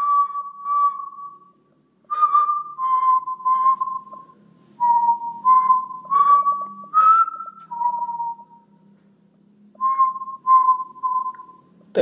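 A man whistling a slow tune close to the microphone: about a dozen notes at much the same middle pitch, each starting with a breathy puff, broken by two pauses of about a second.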